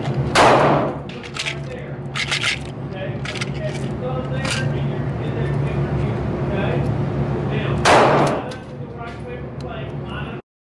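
Two gunshots from other shooters at the range, one about half a second in and the other near the end, each sharp and loud with a short echo. Between them come light clicks of .22 LR cartridges and rotary magazines being handled and loaded, over a steady low hum.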